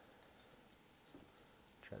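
Near silence, with a few faint light ticks of a small steel pry tool against the metal casting of a diecast toy car.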